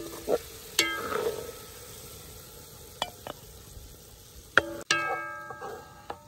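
Chicken pieces frying in a cast-iron pot as a wooden spoon stirs them. The spoon knocks against the pot several times, most loudly near the end, each knock leaving a brief metallic ring.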